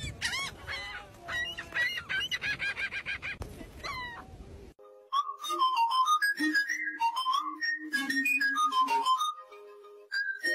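Gulls calling over and over, with a steady rush of noise behind them. About five seconds in the sound cuts to light music: a melody of short stepping notes over a simple low line.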